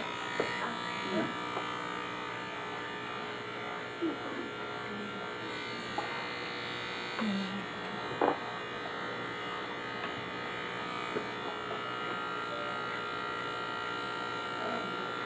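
Corded electric hair clippers fitted with a number-three guard running with a steady buzz while cutting the sides of a mannequin head, taking the fade a guard lower to blend it.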